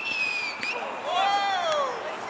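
A short, high whistle blast of about half a second, cut off sharply, then about a second in a man's long shout that rises and falls in pitch.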